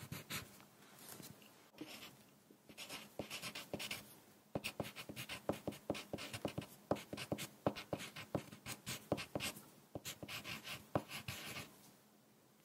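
Wooden pencil writing on paper, close to the microphone: runs of short scratching strokes and ticks of the lead as words and kanji are written. There are brief pauses about two seconds in and near the middle, and the writing stops just before the end.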